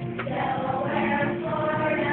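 Children's choir singing, holding sustained notes.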